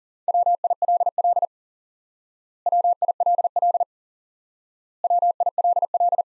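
Morse code sent at 40 words per minute: a single steady mid-pitched tone keyed on and off in quick dots and dashes. One short word is sent three times, each sending lasting a little over a second, with about a second's gap between them.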